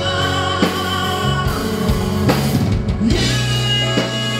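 Live rock band playing through a PA: drum kit, electric guitars, bass and keyboards, with a male lead singer.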